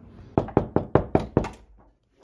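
Knocking on a wooden door: six quick, evenly spaced knocks lasting about a second.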